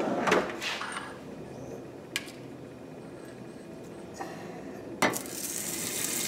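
A few light clicks against a stainless steel pan, then about five seconds in a sharp knock as a pat of butter drops into the hot pan and starts to sizzle softly.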